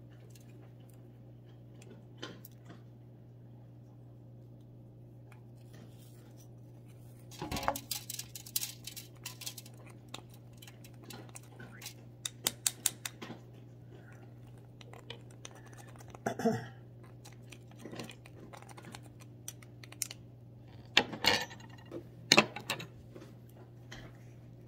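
Metal pipe tool scraping and picking inside the bowl of a corn cob pipe: bursts of quick clicks and scrapes, with a few sharper taps near the end, over a steady low hum. A person clears their throat midway.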